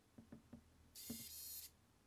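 Wheeltop EDS TX wireless electronic front derailleur's motor whirring for about two-thirds of a second as it shifts the cage across, preceded by a few faint clicks. The derailleur is responding to the app's shift command again after being recalibrated.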